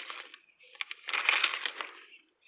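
Gift wrapping paper crinkling and tearing as it is pulled off a book. It comes in two bursts, a short one at the start and a longer one about a second in, with a small click between them.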